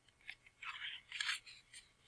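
Faint rustling of a picture book's paper page as a hand takes hold of it to turn it: a few short, soft swishes.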